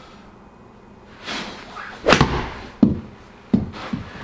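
A golf club swinging through with a rising whoosh, then a loud sharp crack as it strikes the ball into the simulator's impact screen. Two more sharp knocks follow, less than a second apart.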